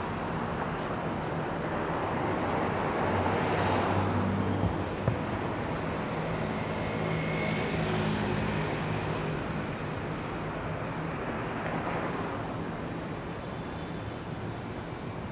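City street traffic: cars and a motor scooter passing close by, engine hum and tyre noise rising and falling as they go. One sharp click about five seconds in.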